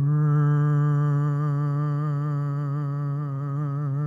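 A singer holding one long, steady note with vibrato in a hymn sung during communion.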